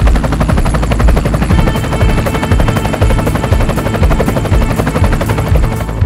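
Loud closing music with a fast, rattling pulse many times a second; sustained chords join in about a second and a half in.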